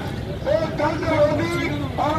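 A man's voice talking or calling out, words not made out, over a low rumble of engine and street noise.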